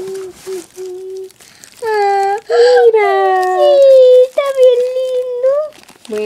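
A high-pitched voice making long, drawn-out wordless sounds: a faint hum early, then loud held cries from about two seconds in, some gliding down in pitch, ending about half a second before the end.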